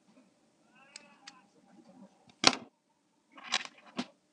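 Small scissors snipping through tape: two sharp cuts, a short loud snip about two and a half seconds in and a slightly longer one about a second later.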